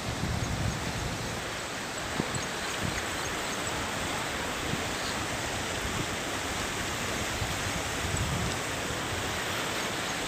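Fast-flowing floodwater from heavy rain rushing over a road, a steady rushing noise, with low rumbles of wind on the microphone underneath.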